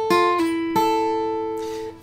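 Takamine acoustic guitar fingerpicked: a few notes of a fifth-fret barre riff, a pull-off on the second string followed by a note on the high E string at the fifth fret that rings for about a second before it is cut off near the end.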